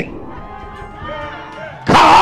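Faint voices of a church congregation calling out, over soft background music.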